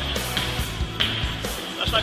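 Background music with steady bass, and a man's voice coming in near the end with a sung or chanted line.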